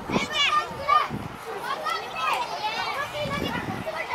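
Young children shouting and calling out on a football pitch, several high voices overlapping.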